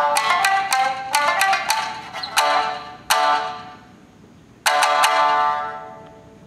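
Tsugaru shamisen played solo with a bachi plectrum: a quick run of sharply struck notes, then three single strong strikes, each left to ring and die away, the last after a short near-quiet pause. These are the closing notes of the piece.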